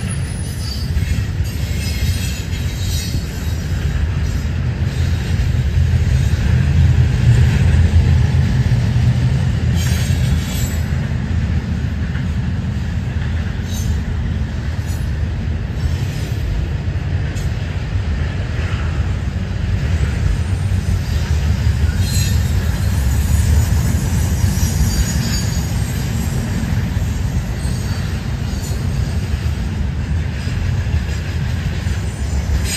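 Double-stack intermodal freight train rolling past: a steady rumble of wheels on rail, swelling a little several seconds in, with faint, intermittent high-pitched wheel squeals.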